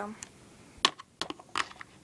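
A few sharp clicks and taps of hard plastic, the loudest a little under a second in: a toy horse figurine being handled and set down on a hard surface.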